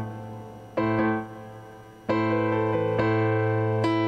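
Keyboard playing slow chords: a chord fades, a new one is struck about a second in and left to ring down, then another is struck about two seconds in and held.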